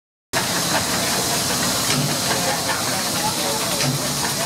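Steady hiss of steam from a riveted stationary steam boiler and engine.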